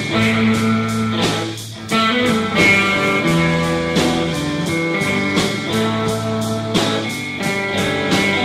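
Rock band playing an instrumental passage: distorted electric guitars over bass and a steady drum beat, no vocals, with a brief dip in loudness about two seconds in.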